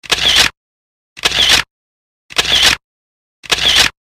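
Camera shutter sound effect played four times, about a second apart, each a short click lasting about half a second, with dead silence between.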